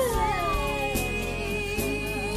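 Mourners wailing over a coffin: long, drawn-out cries of grief that slide down in pitch.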